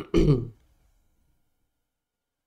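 A man clears his throat once, briefly, close to a microphone, just after the start.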